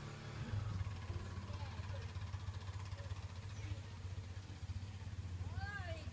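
Small tuk tuk (auto rickshaw) engine running steadily, a low drone with a rapid pulse. Near the end a short rising-and-falling call is heard over it.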